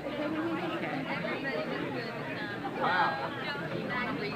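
Several people in a meeting hall talking at once, with one voice rising louder about three seconds in.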